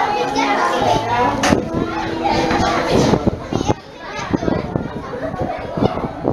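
Children's voices: several kids chattering and shouting at play, overlapping, with a brief drop in level a little past the middle.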